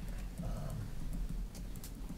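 A pause between spoken phrases. A steady low electrical hum runs underneath, a brief faint vocal sound comes about half a second in, and a few soft clicks follow in the second half.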